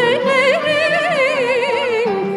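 A woman singing an improvised Turkish gazel: one long melismatic line of quick ornamental turns and wavering pitch.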